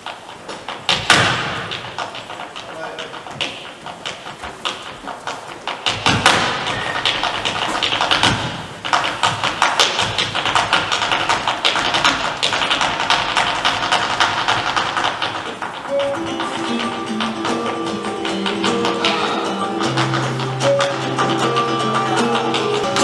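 Flamenco dancer's zapateado footwork: rapid heel and toe strikes on a wooden stage, with heavy stamps about a second in and about six seconds in. Held musical notes enter near the end under the footwork.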